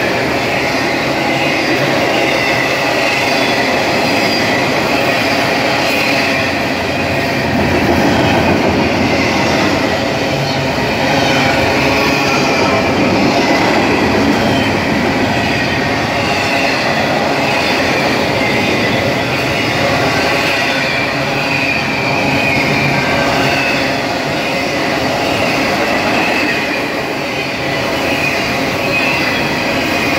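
Container well cars of a long intermodal freight train rolling past close by: a steady loud rumble of steel wheels on rail, with a wavering high squeal from the wheels over it.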